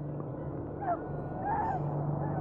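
Horror-film soundtrack: a wounded man's short pained whimpers, one about a second in and another near the end, over a low steady drone.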